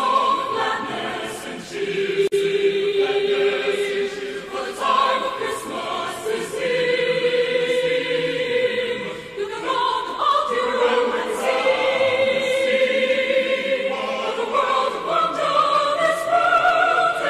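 A choir singing a slow Christmas song in long held notes.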